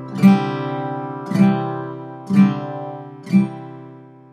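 Acoustic guitar strummed four times, about once a second, each chord ringing out and fading before the next. It is an open C chord, played with the middle finger lifted off as a variation.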